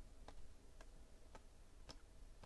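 Faint clicks about twice a second as baseball trading cards are slid off a stack one at a time and flipped from hand to hand.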